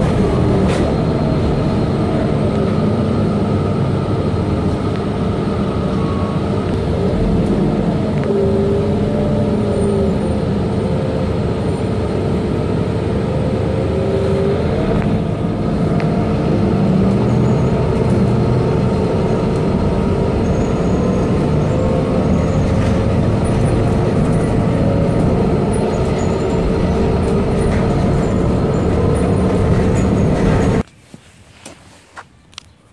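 Steady running noise of a moving road or rail vehicle heard from inside, with a constant hum and a fainter whine that rises and falls now and then.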